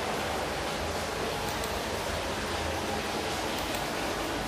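Steady, even hiss of background noise with a faint low hum underneath.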